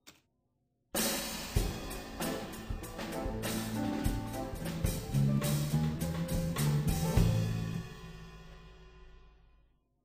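Playback of a live band recording: drum kit with snare and cymbals and pitched bass notes. It starts suddenly about a second in, then dies away smoothly over the last two seconds or so, the applied fade-out at the end of the track.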